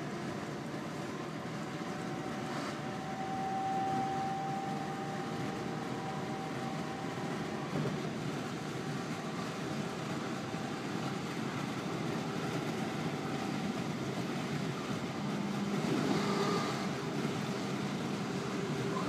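Class 323 electric multiple unit running at speed, heard from inside the carriage: a steady rumble of wheels on track with a faint whine from the traction equipment. The whine brightens a few seconds in, and a louder rush comes near the end.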